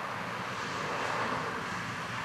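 A passing vehicle: a steady rushing noise that swells a little toward the middle.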